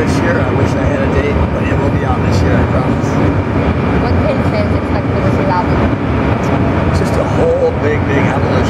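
A man talking over a loud, steady low rumble of background noise.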